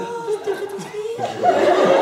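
A single drawn-out voice holding one pitch, then a theatre audience bursts into laughter about a second in, which grows to be the loudest sound.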